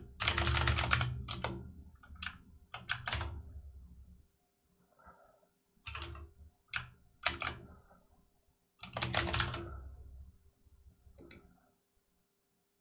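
Typing on a computer keyboard in several short flurries of keystrokes with pauses between them, the busiest flurries at the start and about three-quarters of the way through.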